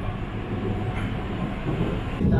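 Steady running rumble of a Rapid Metro Gurgaon train, heard from inside the moving carriage.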